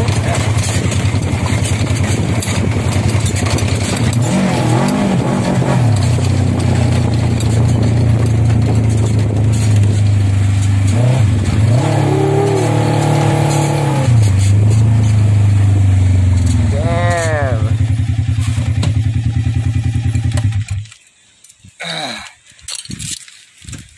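Polaris ATV engine running under way on a rough dirt track, rising and falling in pitch as the throttle is worked, then cutting out near the end.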